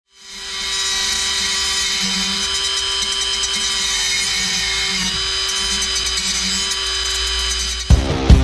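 Die grinder running at a steady high-pitched whine as its bit ports the aluminium crankcase of a Honda Motocompo two-stroke engine. It fades in at the start and cuts off just before the end.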